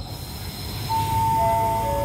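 A descending three-note chime, each note held and ringing on as the next starts, typical of a railway station's public-address chime, beginning about a second in. Beneath it runs the low rumble of the train standing at the platform.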